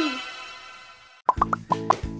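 Intro jingle: a falling whistle-like glide fades out, then about a second in a quick run of short cartoon bubble-pop sound effects plays over light music.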